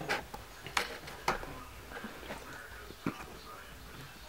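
Quiet handling noise: a few short soft clicks and faint rustles in a small room.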